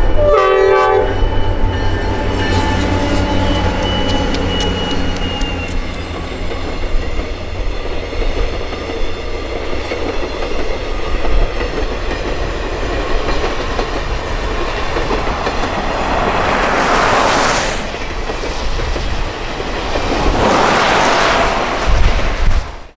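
Grand Canyon Railway diesel locomotive sounding its horn, a chord that ends about a second in, then passing with a steady engine rumble. Its passenger cars then roll by on the rails, with two swells of rushing noise near the end.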